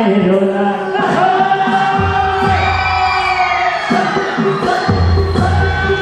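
A man singing a Nepali folk song in panche baja style into a microphone over loud amplified music. Held, gliding melody notes run over a low drum beat that comes in about two seconds in and again near the end.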